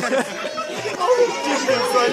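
Speech only: several young men's voices chattering over one another and laughing.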